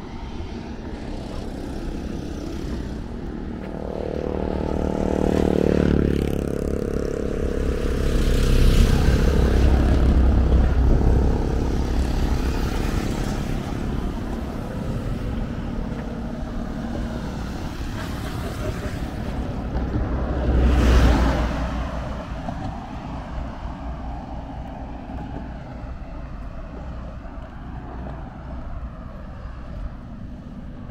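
Motor vehicles passing on the road over a steady traffic rumble. About five seconds in, an engine note falls in pitch as it goes by and runs into a heavier low rumble. A second vehicle passes close at about twenty-one seconds.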